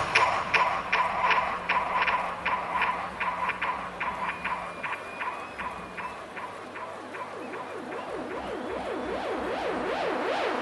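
A breakdown in a hardstyle DJ set over a festival sound system, with the kick drum gone. A light ticking beat of about four clicks a second and a pulsing synth note fade away, then sweeping synth tones build up, getting louder toward the end.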